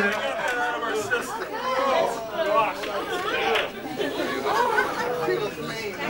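Crowd chatter: several people talking at once in a room, with no one voice standing out.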